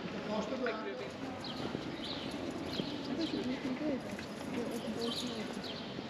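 Indistinct voices of people talking in a cobbled square, with footsteps on the cobblestones.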